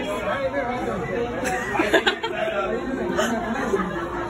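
Chatter of several people's voices in a large, echoing indoor space, with a brief knock about two seconds in.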